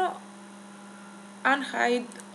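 Steady electrical hum in the recording: a low, even tone with faint overtones, carried under the pauses in the voice.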